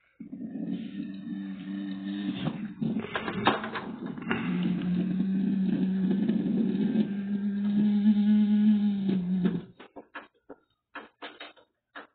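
Audio of a video played back through a TV speaker: a long, held pitched sound that moves between a few steady notes and stops abruptly after about nine and a half seconds, followed by a few faint clicks.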